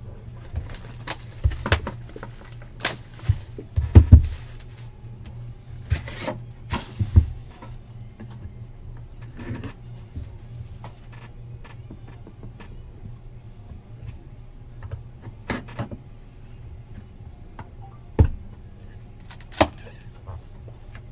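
A folding knife scraping and cutting the wrap off a sealed cardboard trading-card box, with scattered sharp taps and knocks as the box is handled on the table. The loudest knocks come about four and seven seconds in, and two more near the end as the lid is lifted. A low steady hum runs underneath.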